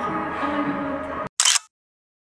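Background music with steady held notes that cuts off abruptly just past a second in, followed at once by a single short phone camera shutter click.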